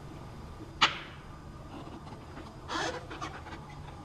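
Handling noise from a gloved hand tilting and swirling a plaster-backed silicone mold with liquid resin inside: one sharp click about a second in and a brief rustle near three seconds, over a faint steady hum.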